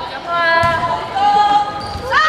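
A volleyball struck once about half a second in during a rally, amid girls' voices calling out in long drawn-out shouts.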